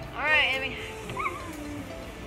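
A child's short high-pitched squeal, rising then falling, with a smaller yelp about a second later, over background music.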